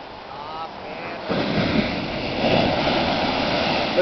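Ocean wave breaking on the beach, its crash swelling in about a second in, then the surf rushing up the sand.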